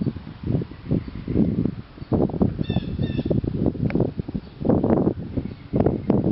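Irregular low thumping and rumble on the microphone, loud throughout, with two short bird calls about two and a half and three seconds in.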